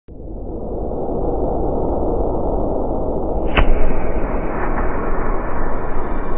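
Logo intro sound effect: a loud, noisy rumble that swells in over the first second and holds, with a single sharp crack about three and a half seconds in.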